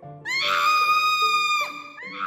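A woman's long, high-pitched scream of alarm at a cockroach nearby. It rises at the start, is held for about a second and a half, then drops off. Another scream begins right at the end.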